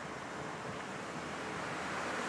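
Steady rushing background noise of a city street, with no distinct events, slowly growing a little louder toward the end.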